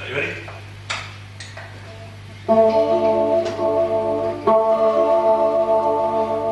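Steady low amplifier hum with a few light knocks, then an electric guitar chord is struck through the amp and left ringing, and struck again about two seconds later.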